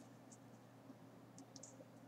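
Near silence with a low steady hum, broken by a few faint short ticks as a plastic ruler and pen are shifted on paper.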